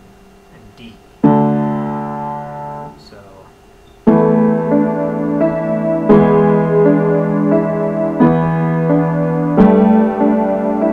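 Piano: one octave or chord struck about a second in and left to ring out, then from about four seconds in, steady two-handed playing. Octaves sound in one hand under a repeating three-note figure in the other.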